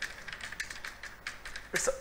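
Typing on a computer keyboard: a quick, uneven run of key clicks as a phrase is typed out, with a spoken word near the end.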